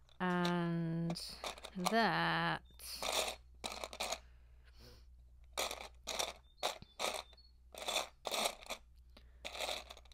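A wordless hum held for about a second, and a second short hum. Then a run of rustling, clattering bursts, one or two a second, from a hand sifting through loose plastic LEGO bricks in a tub in search of a piece.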